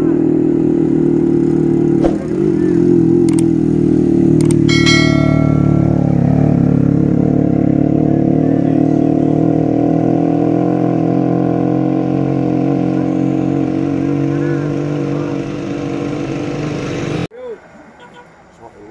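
Big-cc touring motorcycle engine pulling up a steep climb, a steady low drone that cuts off abruptly near the end. A brief high-pitched tone sounds about five seconds in.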